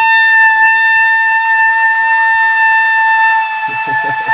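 A horn blown by mouth for a ritual wake-up call, sounding one long, loud, steady note at an even pitch.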